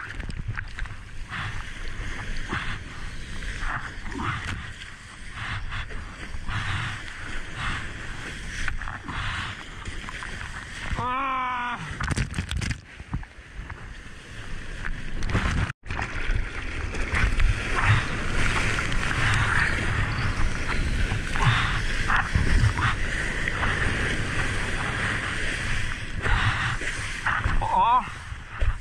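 Water rushing and splashing around a surfboard-mounted action camera as the board skims through breaking whitewater. The rushing gets louder and hissier from about halfway through.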